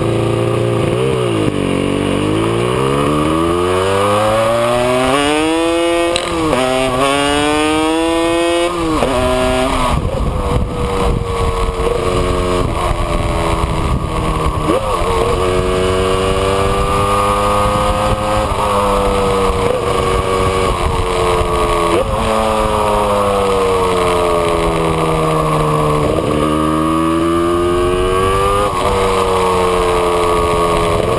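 A 1984 Yamaha RZ350's two-stroke parallel-twin engine and exhaust on the move, heard close to the exhaust silencer. In the first ten seconds the revs climb steeply and drop suddenly twice as it shifts up through the gears. After that the revs rise and fall gently through the bends.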